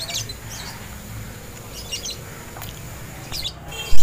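Birds chirping a few short times, faint, over a quiet background.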